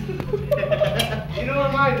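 People talking over one another, over a steady low hum.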